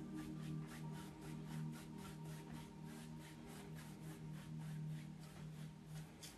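Bristle brush swept lightly back and forth across an oil-painted canvas, a faint, quick, even scratching of several strokes a second as the wet paint is blended. Soft background music with steady held tones runs underneath.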